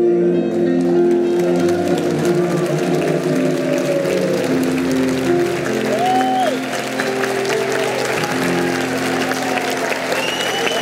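Audience applauding over the last held chord of a live song, which sustains under the clapping, with a few cheers about six seconds in.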